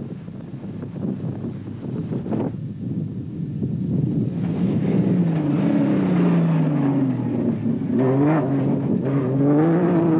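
A Ford off-road race truck's engine running hard, getting louder through the first half. Its pitch falls steadily over a couple of seconds in the middle, then climbs again near the end.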